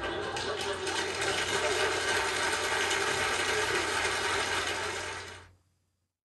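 Studio audience applauding, fading out shortly before the end.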